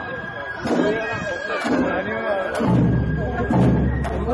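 Festival hayashi music: a held high flute note that steps up a little in pitch a little before three seconds in, with a couple of sharp drum-like strikes, under people chatting. A deep low rumble joins at the pitch change.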